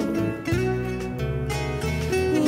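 Fado group's plucked-string accompaniment, guitars picking a melody over a low bass line, played in a short pause between sung phrases.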